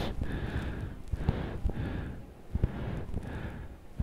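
Footsteps at a walking pace, about two a second, with rubbing and knocks from handling a hand-held camera, over the low background of a terminal hall.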